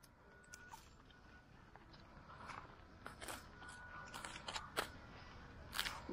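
Rice paddy herb (ngò om) being cut by hand close to the soil: a series of faint, irregular crunchy snips of the stems, a few sharper ones in the second half.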